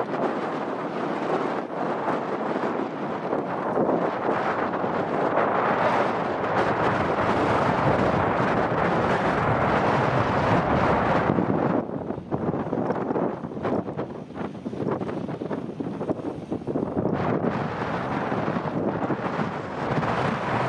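Engine of a first-generation Mazda MX-5 working under load as the car crawls over grass, mixed with wind buffeting the microphone. The sound eases about twelve seconds in and comes back up about five seconds later.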